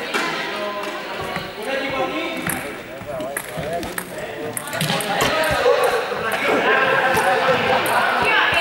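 Many students chatting at once in a large sports hall, with a few sharp taps among the voices. The chatter grows louder about five seconds in.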